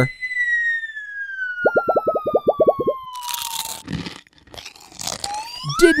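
Cartoon sound effects for a dropped candy box: a long whistle sliding down in pitch, a quick run of rattling clicks partway through, and a crunch as the box lands crumpled, about three seconds in. Near the end a short whistle slides up in pitch.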